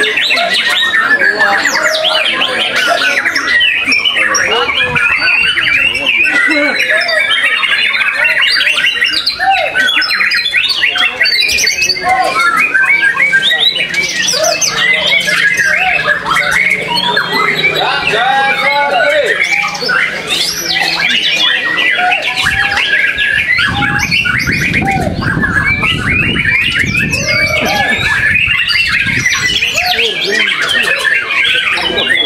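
White-rumped shamas (murai batu) singing in competition: a dense, unbroken chorus of overlapping whistles, trills and chatter from many birds at once.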